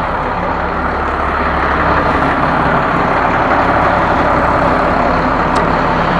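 Steady low mechanical rumble and hum, like a vehicle engine or machine running nearby, with a faint click near the end.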